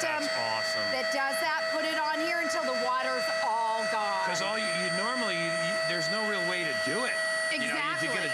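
Hoover Spotless portable carpet cleaner running with a steady whine while it flushes water through its hose in the self-cleaning port, with voices talking over it.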